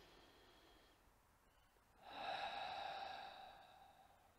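A man breathing out audibly through an open mouth: a long, breathy sigh that starts about two seconds in and fades over a second and a half.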